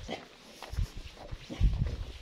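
Footsteps of a person walking on a paved road, with heavy low thumps about a second in and again near the end that are the loudest sounds.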